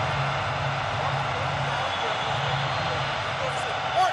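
Steady ballpark background noise during a televised game: an even rushing noise with a low hum under it, and no distinct events.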